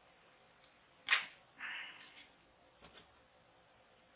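A sharp tap about a second in, from a paint-stirring stick being set down on the work table, followed by a short rustle and two lighter clicks near the end.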